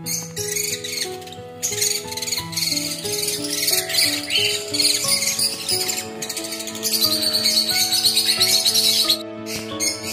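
Many small cage birds chirping and chattering at high pitch, with a fast trill near the end, over background music that holds and steps between steady notes.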